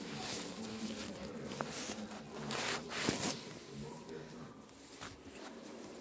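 Faint voices talking in the background, with rustling and handling noises, strongest about halfway through.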